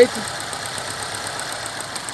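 Fiat Siena's Fiasa four-cylinder multipoint-injection engine idling steadily with the hood open. The idle is even, the sign of an engine running right after a new wiring harness, cleaned injectors and new filters cured its oscillating idle.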